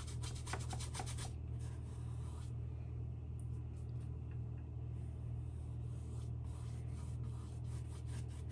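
Paintbrush scrubbing oil paint onto a stretched canvas in short, quick strokes. The strokes come thick for about the first second, then only now and then, over a steady low hum.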